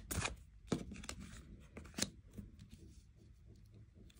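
Oracle cards being handled and laid down on a table: a few sharp card taps in the first two seconds, then fainter ticks as the cards are slid and pressed into place.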